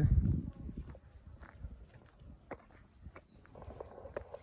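Footsteps on a brick-paved driveway, a faint irregular tapping, after a short low rumble at the start.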